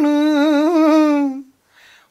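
A man singing unaccompanied, holding one long sung note with a slight waver that ends about a second and a half in.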